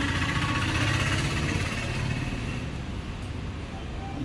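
A motor vehicle's engine running close by, loudest at first and then gradually fading away.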